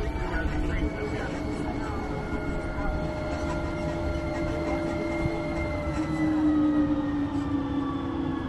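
Open-air shuttle tram in motion: a steady mechanical whine from its drive over a low rumble, the whine sinking slightly in pitch over the last few seconds.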